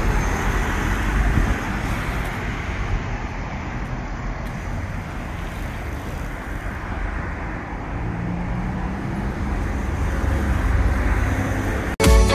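City street traffic: a steady wash of road noise and engine rumble, louder at first, easing off in the middle and building again toward the end.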